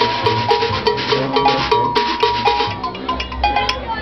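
Junkanoo street band playing: cowbells clanging in a quick steady beat over drums, with horns holding sustained melody notes.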